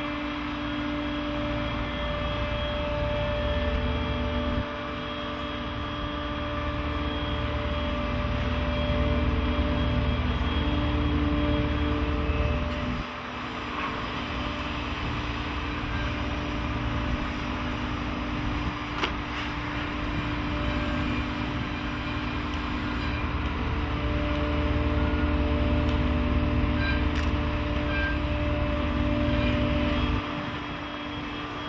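Electric-driven hydraulics of a Sennebogen 870 Electro crawler material handler running with a steady hum over a low rumble. The rumble swells twice as the machine works, easing for a moment about midway.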